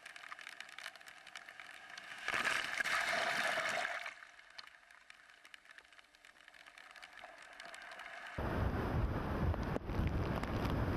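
Hurricane storm surf on a rocky shore, with one loud rush of a breaking wave about two seconds in that lasts under two seconds. From about eight seconds in, strong hurricane wind buffets the microphone, starting suddenly with a loud, deep rumble.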